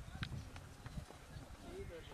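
Faint, indistinct voices in the distance over a low rumble, with a single sharp tap about a quarter of a second in.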